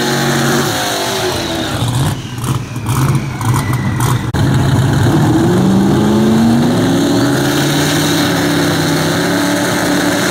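Drag-race car engines revving at the starting line, with uneven, choppy revs a couple of seconds in. About five seconds in the revs climb and then hold at a steady pitch, as when a car is held at high revs before launch.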